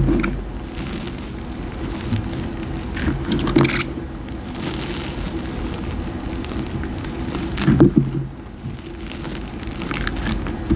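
Hands squeezing and digging through loose powdered gym chalk in a bowl: a steady soft crunching and squishing of the powder. Louder crunching handfuls come near the start, about three and a half seconds in, and near eight seconds.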